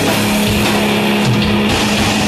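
Heavy metal band playing live: electric guitars over a drum kit, loud and steady throughout.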